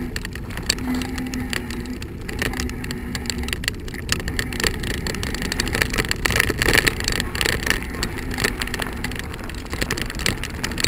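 Bicycle tyres rolling over a gravel and dirt path: a steady crunching rumble dotted with many small clicks and rattles.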